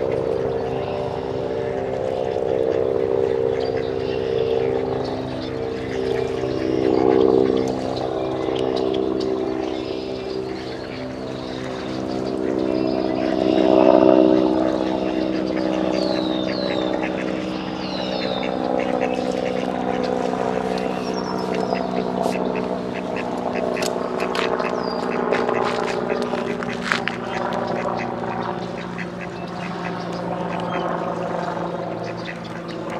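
Mallard ducks quacking over a steady low motor drone that swells twice. A few short, high chirping bird calls come about halfway through, and sharp clicks follow near the end.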